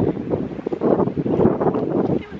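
Wind buffeting the microphone: a loud, uneven rushing noise that swells and dips.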